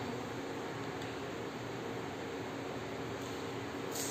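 Steady low hiss of room tone, with no other distinct sound.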